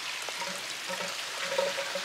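Water running and splashing in a garden rockery and koi pond with its filtration system, heard as a steady hiss.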